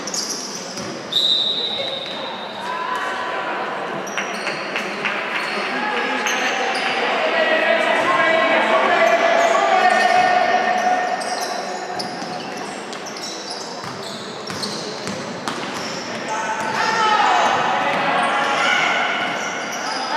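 Basketball game sounds echoing in a sports hall: a ball bouncing on the hardwood court and voices shouting, with a referee's whistle blast about a second in.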